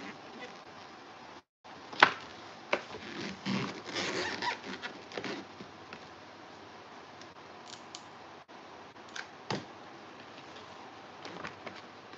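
Hands handling paper and wooden craft sticks on a foam-board cutout: a sharp tap about two seconds in, a couple of seconds of scratchy rubbing against the paper, then two more taps later on.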